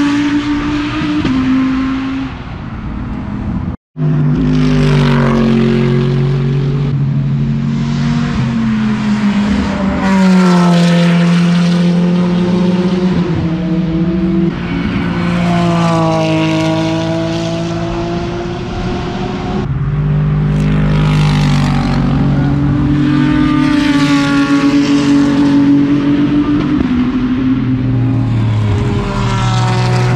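Race cars passing on the circuit one after another, loud engines rising in pitch under acceleration and falling on downshifts and braking, often with two cars heard at once. The sound cuts out for an instant about four seconds in.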